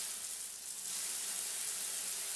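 Shower running: a steady hiss of water spray.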